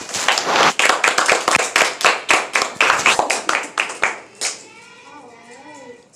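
Loud, fast hand clapping close by, lasting about four and a half seconds and then stopping, with voices after it.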